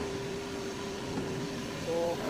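Steady industrial hum of a plant hall, a constant mid-pitched drone over an even rushing background noise.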